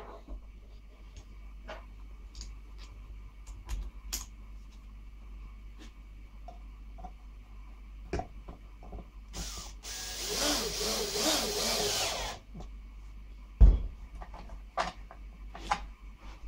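Cordless drill-driver running at low speed for about three seconds, starting about nine seconds in, as a self-centring drill bit bores a pilot hole into pine through a brass barrel bolt's screw hole. Light handling clicks come before it, and a single sharp knock follows about a second after it stops.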